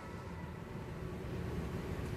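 Room tone: a steady low rumble with a faint hiss, and no music.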